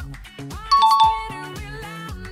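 Background pop music with a bright two-note chime, like a doorbell ding-dong, a little under a second in; the chime is the loudest sound and rings out for about half a second.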